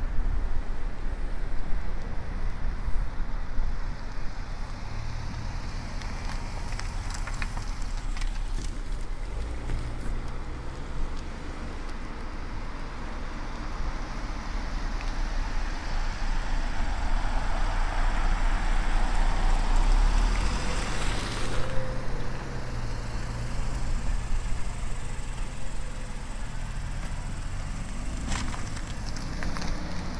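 Passenger cars and an SUV driving slowly past at close range, engines running at low speed with tyre noise. One vehicle gets louder as it comes close and is loudest about twenty seconds in.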